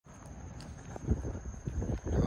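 Wind buffeting a phone's microphone as it is carried along: a low, uneven rumble that grows louder, with a few bumps about a second in. A faint steady high-pitched tone runs underneath.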